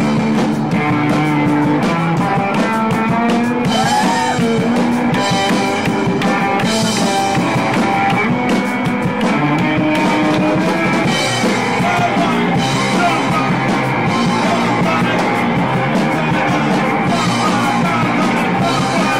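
Punk rock band playing live at full volume: distorted electric guitar and drum kit.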